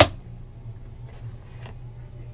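A sharp click right at the start, then faint rustling as the cardboard lid of a trading-card hobby box, its seal cut with a razor blade, is lifted off, over a low steady hum.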